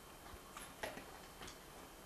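Quiet room tone with a few faint, short clicks, the clearest a little before the one-second mark.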